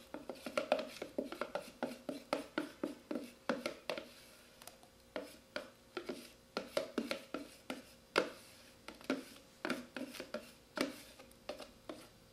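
Thin plastic container clicking and tapping as it is held tipped and shaken over a bowl to empty out thick, foamy yeast starter: a long run of sharp irregular clicks, several a second, with a short lull about four seconds in.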